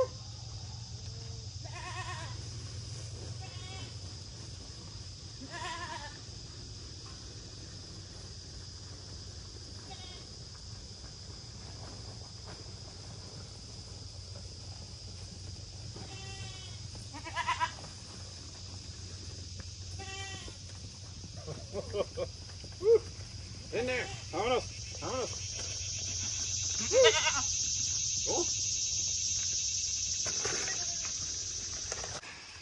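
Cattle calling in the pen: short, fairly high-pitched bawls every few seconds, coming one after another near the end.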